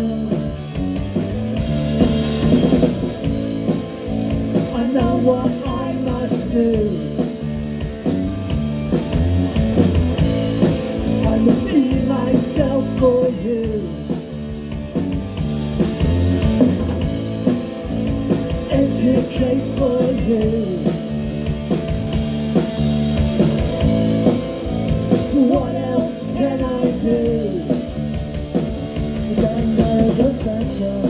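Live punk rock band playing a song: distorted electric guitar through a Marshall amp, bass guitar and drum kit, with a sung vocal line.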